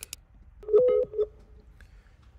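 Skype placing an outgoing call: a click, then about half a second in a short run of electronic telephone tones as the call starts connecting.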